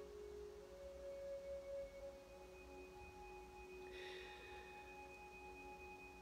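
Faint meditation background music of sustained, pure ringing tones. Several overlap, and new tones come in about half a second and two seconds in.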